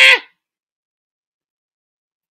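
The end of a loud, held shout of "Ah!" at a steady pitch, which stops about a quarter second in; the rest is dead silence.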